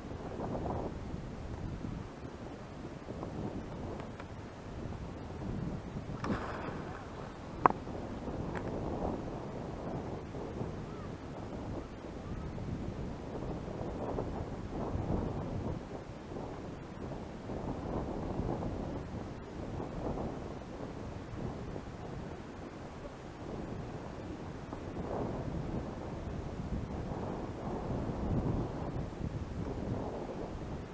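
Wind buffeting the microphone in uneven gusts, with one sharp click about eight seconds in.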